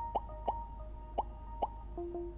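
Quiet background music of soft held notes, with four short water-drop-like plops, two in the first half-second and two more about a second later.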